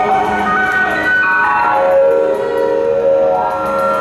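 Live rock band with an electric guitar solo on top: long held notes that slide down in pitch and then climb back up again.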